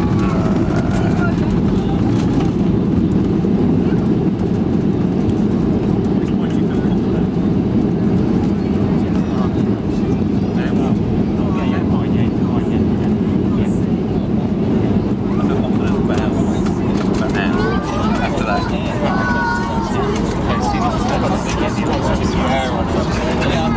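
Steady low rumble inside the cabin of a Boeing 737 during the landing roll-out, from the engines and the wheels on the runway, with the spoilers deployed after touchdown. Indistinct passenger voices come and go near the start and in the last few seconds.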